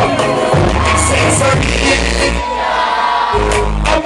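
Live reggae-dancehall music over a loud PA, with a heavy bass line and vocals; the bass drops out for about a second past the middle and then comes back in.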